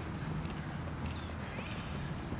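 Quick footsteps of athletic shoes on grass during an agility-ladder side-step drill: a run of light, rapid foot strikes over a steady low rumble. A bird chirps once about a second in.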